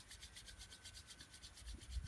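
A pair of hands rubbing palm against palm briskly to warm them: a faint, fast, even swishing.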